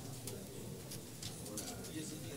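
Faint murmur of distant voices in a large room, with scattered small clicks.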